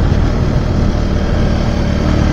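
Zontes V1 350 motorcycle's single-cylinder engine running steadily at cruising speed, heard from the handlebar with a steady low road-and-wind rush.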